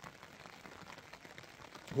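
Faint, steady patter of rain on the fabric of a bivvy tent, heard from inside. A man's voice starts at the very end.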